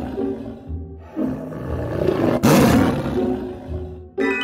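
A tiger roar sound effect over background music: a loud roar starts suddenly about two and a half seconds in and fades over about a second and a half, while the tail of an earlier roar dies away at the start.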